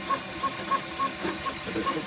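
Flashforge Dreamer 3D printer at work: its stepper motors give short, high tones about three times a second as the print head shuttles back and forth, over a steady hiss from its cooling fans.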